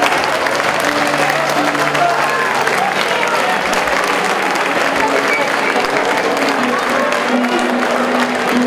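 Crowd applauding and calling out as the boxers return to their corners at the end of a round, with music playing.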